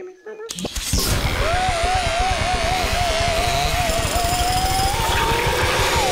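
Comedy sound effect of the Carve-O-Matic machine powering up: a loud, rapid rattling buzz with a wavering wail over it that climbs in pitch near the end, about half a second in after a moment of quiet.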